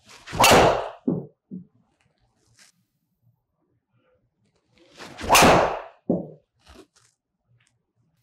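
Two golf driver shots about five seconds apart: each a loud strike of the driver head on the ball, followed by a couple of softer thuds.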